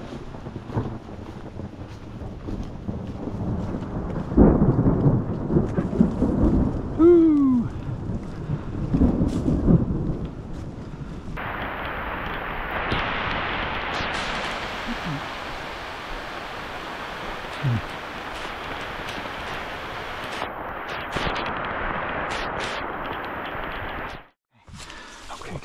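Thunder rumbling loudly for several seconds, then a sudden change to the steady hiss of rain falling hard, which continues to the end.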